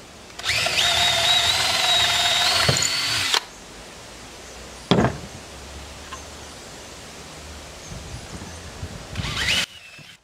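DeWalt cordless drill/driver running for about three seconds as it drives a screw into a wooden shelf block, its whine stepping up slightly in pitch. A sharp knock follows about five seconds in, and near the end the drill briefly spins up again.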